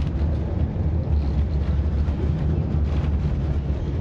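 Steady low rumble inside the cabin of a moving city passenger vehicle (bus, trolleybus or tram).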